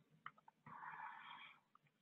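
Near silence, with a faint click about a quarter second in and then a soft hiss lasting under a second.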